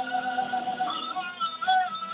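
Music with a singing voice holding long, steady notes that step from one pitch to another.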